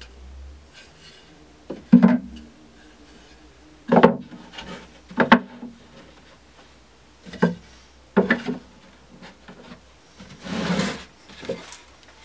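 Pallet-wood slats knocking against wood as they are set into the base of a wooden TV cabinet: five sharp knocks a second or two apart, then a longer scrape of a board sliding into place near the end.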